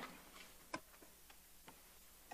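Near silence: room tone with a few faint, scattered clicks, the clearest a little under a second in.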